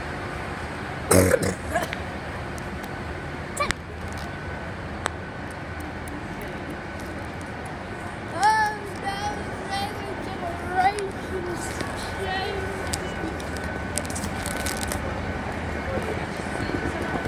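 Railway station platform ambience: a steady background hum with a thin high tone running through it. A loud knock comes about a second in, and a few short voice sounds about halfway through.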